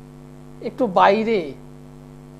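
Steady electrical mains hum, a low drone made of several steady tones, running under the sound track. A man's voice speaks one short word about a second in.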